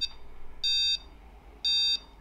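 Boundary alarm hub beeping once a second during its exit-delay countdown after being armed: two short, high-pitched beeps a second apart, the warning to leave before the alarm sets.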